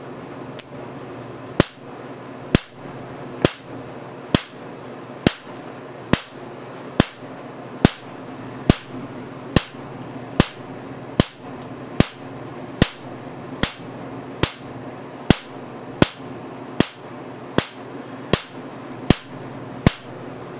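Marx generator firing over and over, its spark snapping across a 7-inch electrode gap through salt-water mist. The sharp cracks start about a second and a half in and come a little more than once a second, over a steady low hum.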